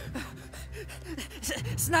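A man gasping for breath in short vocal gasps, then starting to speak in a pleading voice near the end.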